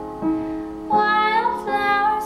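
A woman singing a slow pop song, accompanying herself on a digital piano. New piano chords sound about a quarter second in and again about a second in, and her voice climbs in pitch after the second chord.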